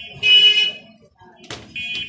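Steel mesh kitchen rack parts being handled. There is a loud, brief metallic scrape near the start and a sharp clank about one and a half seconds in, over a steady high-pitched tone.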